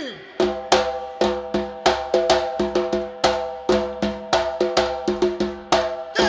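Live band's drums and percussion playing a syncopated intro pattern, several sharp strikes a second, over a pitched note that rings on steadily underneath.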